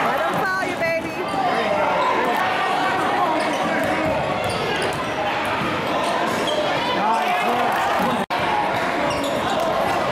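A basketball being dribbled on a hardwood gym floor during play, over the chatter and calls of players and spectators in a large, echoing gym. The sound cuts out for an instant about eight seconds in.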